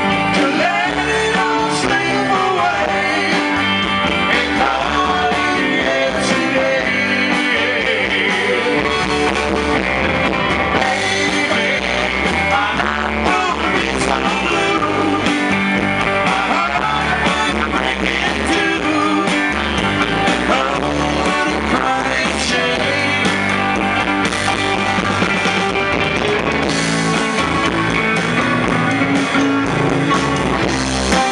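Live band playing rock and roll, with electric guitar to the fore.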